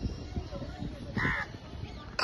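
A crow cawing once, about a second in, over a low background rumble.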